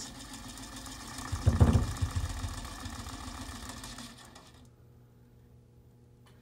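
Small electric motor on top of a model building frame running and shaking the unbraced frame near its resonant frequency, the frame and base rattling, with a loud low rattle about a second and a half in. The sound then fades out about four seconds in.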